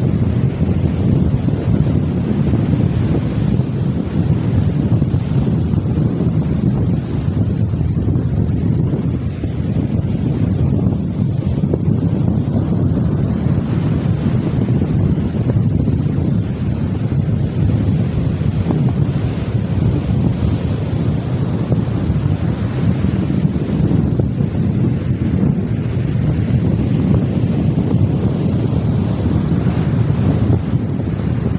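Surf breaking steadily on a sandy beach, a continuous loud rush of waves, with wind buffeting the microphone and adding a low rumble.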